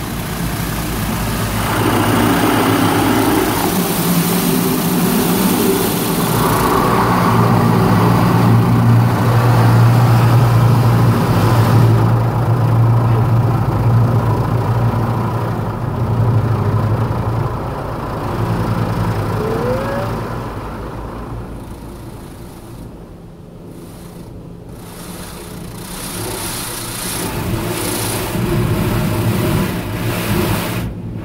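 High-pressure water jets of a touchless automatic car wash spraying the car, heard from inside the cabin as a loud, dense hiss over a steady low hum. The spray fades for a few seconds about two-thirds of the way through, then builds again near the end.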